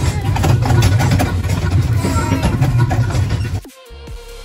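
Steady low rumble of a small ride-on shopping-centre train in motion, heard from inside its open car. It cuts off abruptly shortly before the end.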